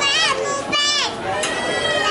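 A young child's high-pitched voice calling out: two short calls that slide up and down, then a longer held call near the end.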